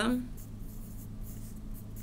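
A pen writing on lined notebook paper in short, quick strokes as an equation is written out, over a steady low hum.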